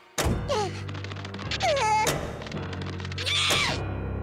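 Cartoon soundtrack: music with a sudden thunk just after the start, then sliding pitch glides, first falling and then rising, over a steady low bass.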